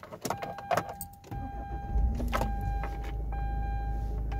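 Keys rattle and click, then a 2006 Hyundai Santa Fe's 2.7-litre V6 is started: it cranks, catches about two seconds in with a brief rise in revs, and settles into a steady idle. A steady electronic tone sounds alongside.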